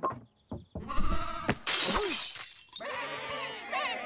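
A sudden crash about a second in, followed by cartoon sheep bleating in wavering calls.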